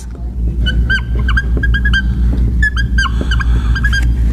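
Dry-erase marker squeaking on a whiteboard as letters are written: a quick run of short, high-pitched chirps over a steady low rumble.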